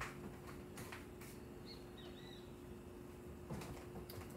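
Faint room tone with a steady low hum, a few soft knocks from off-camera, and two short faint high chirps about halfway through.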